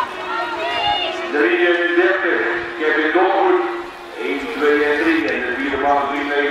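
Raised, high-pitched human voices calling out, with short pauses about two and a half and four seconds in.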